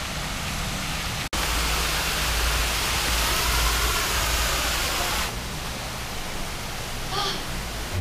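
Steady rushing noise, broken by a brief gap about a second in and louder until about five seconds in.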